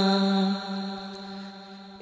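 Bengali Islamic gojol: a singer holds one long note at the end of a sung line, steady at first and then fading away through the second half.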